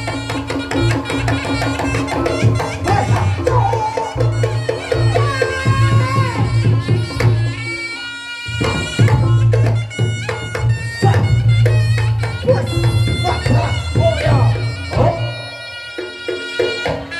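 Live Reog Ponorogo gamelan accompaniment: a slompret, a reedy shawm, plays a wavering, bending melody over kendang drum beats and deep, steady gong tones. The music drops out briefly a little past halfway, then comes back in.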